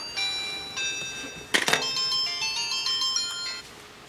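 Mobile phone ringtone playing a melody of electronic notes, with a brief click about a second and a half in; the ringing stops shortly before the call is answered.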